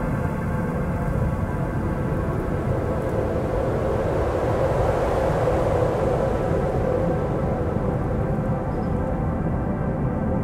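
Ambient meditation drone: many sustained, steady tones layered over a low bed of storm noise of wind and rain. The noise swells a little past the middle, then eases.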